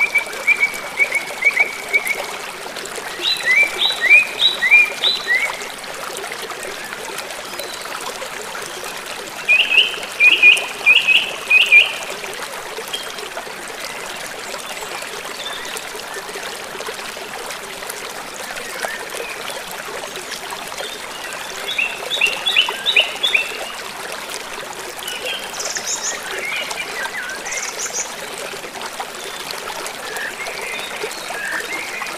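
River water rushing over a small weir, a steady hiss, with a small songbird giving about five short bursts of rapid chirps, near the start, around 4, 11, 22 and 27 seconds in.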